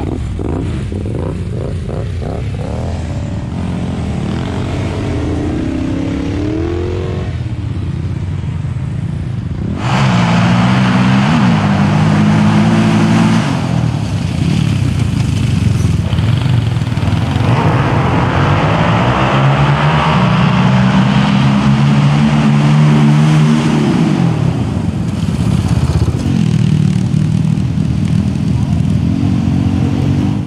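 Several sport quad engines revving and accelerating hard as they drag race up a sand hill, the pitch climbing again and again through the gears. The sound gets louder and closer about ten seconds in.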